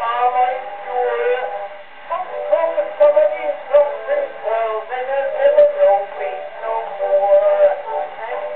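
An acoustic-era 78 rpm disc recording from about 1911 of a male music-hall singer performing a comic song with accompaniment. It sounds thin and boxy, with no deep bass and no bright treble.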